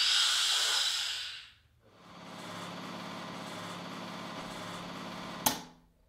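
Automated filter integrity tester starting a water intrusion test: a high-pitched hiss of air for about a second and a half, then a steady mechanical hum for about three and a half seconds that stops with a sharp click.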